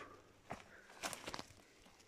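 Faint footsteps on forest floor littered with pine needles and dry leaves: a few soft crunching steps.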